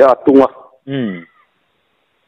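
A man speaking. About a second in, one drawn-out syllable falls in pitch and trails off, then a pause.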